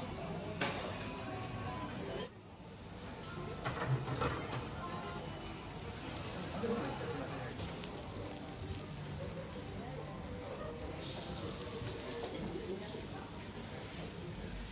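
Wagyu beef and vegetables sizzling on a teppanyaki steel griddle, with a few sharp clinks of metal tongs and spatula on the steel near the start and about four seconds in.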